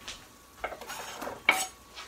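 Chopped carrots scraped off a wooden cutting board into a frying pan with a utensil: a short run of scrapes and light clatters, with one sharp click about a second and a half in.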